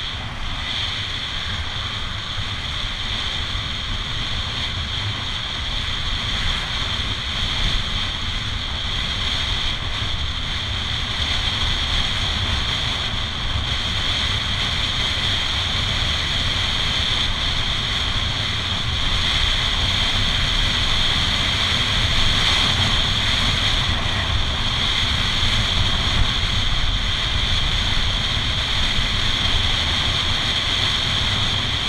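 Wind rushing over a handlebar-mounted camera's microphone as a road bike moves fast on tarmac, a steady rushing noise that grows gradually louder.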